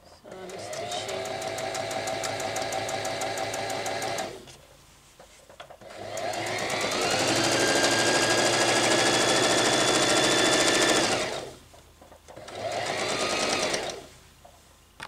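Electric domestic sewing machine stitching a seam through cotton print and satin layers, in three runs with two short stops between them. The middle run is the longest and loudest, and it speeds up as it starts.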